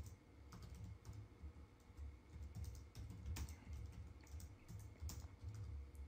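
Faint typing on a computer keyboard: a run of irregular key clicks.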